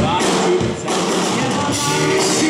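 Live rock band playing: electric guitar through an amp and a drum kit, with a man singing, and a hard drum hit right at the start.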